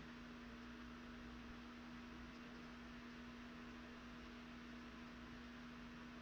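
Near silence: room tone with a faint steady hiss and a steady low hum.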